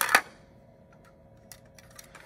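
A quick cluster of sharp plastic-like clicks right at the start, then quiet room tone with a faint steady hum and a couple of faint ticks near the end.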